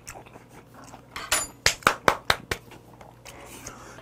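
Close-up chewing of boiled whelk meat, mouth closed: a run of short, sharp mouth clicks and smacks, thickest between about one and two and a half seconds in.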